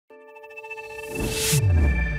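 Short electronic logo sting: a held synth chord, a whoosh swelling up about a second in, then a deep bass tone sliding down in pitch near the end.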